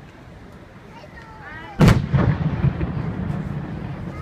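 A firework shell bursts with a single loud boom about two seconds in, followed by a long rumbling echo that slowly fades.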